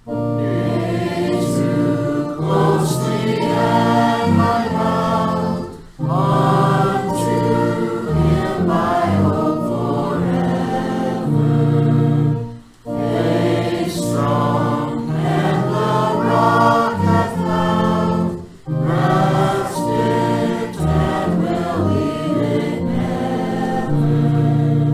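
A church congregation singing a hymn together over held instrumental chords, in phrases of about six seconds with a brief pause between each.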